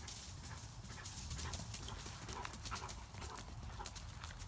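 Faint, irregular footfalls and rustling on dry leaf litter and grass, a scatter of light clicks, over a low rumble of wind on the microphone.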